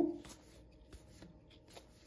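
Trading cards being slid one at a time off a stack and fanned between the hands: faint, scattered papery flicks of card edges rubbing past each other.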